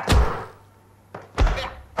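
Two heavy punch thuds about 1.3 s apart, the first with a short shout: a fist striking a hanging canvas punching bag, film fight sound effects.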